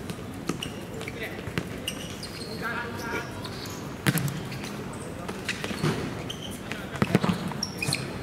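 Football being kicked and bouncing on a hard pitch: several sharp thuds, the loudest about four seconds in and again near seven seconds, over players' shouts and voices.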